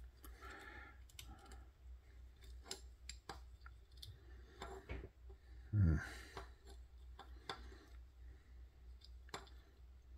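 Faint, scattered clicks and ticks of a titanium-handled folding knife being handled and worked at as its tightly fitted scales are pried apart. A short low grunt comes about six seconds in.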